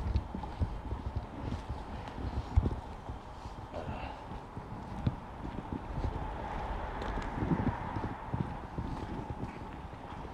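Footsteps of a person walking on paving slabs and brick paving, an uneven run of short knocks.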